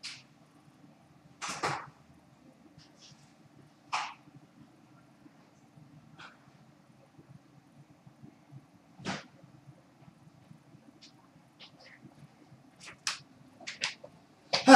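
Low steady room hum with a handful of short, sharp noises from further off: a double one about a second and a half in, single ones around four and nine seconds, and a quick cluster near the end.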